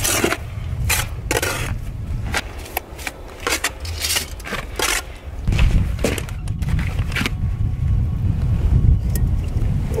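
Steel trowel scraping and spreading mortar on a stone course in quick, sharp strokes, then a stone window sill being set down and shifted on the mortar bed with scrapes and knocks. A low rumble runs under the second half.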